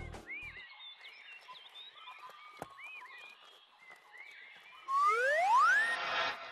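Cartoon forest ambience of faint, short chirping calls with a single click, then a loud rising whistle-like glide about five seconds in that climbs steeply for about a second.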